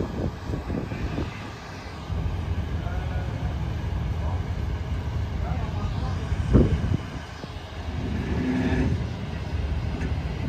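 Low, steady rumble with a single sharp knock about six and a half seconds in.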